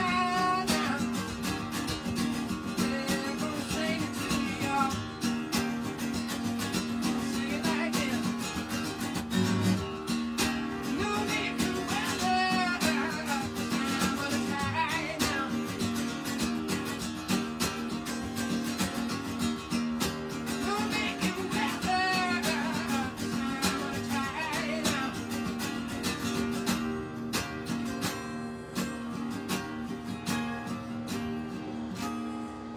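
A man singing with a strummed Takamine steel-string acoustic guitar. He sings in phrases, and over the last few seconds the voice drops out while the strumming goes on.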